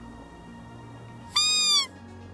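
One loud, high-pitched squeal from a hunter's game call, about half a second long, coming about one and a half seconds in; it jumps up at the start and falls away in pitch at the end. Quiet background music runs under it.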